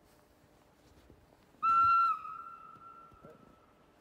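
A train horn sounds one short, steady single-tone blast about a second and a half in. It is loud for about half a second, then trails off at the same pitch over the next couple of seconds.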